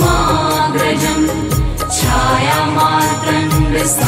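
Hindu devotional mantra music: a chanted or melodic line over low drum strokes, at a steady loud level.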